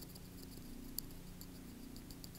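Stylus tapping and scratching faintly on a tablet screen while handwriting, in light irregular ticks with a sharper one about a second in, over a steady low hum.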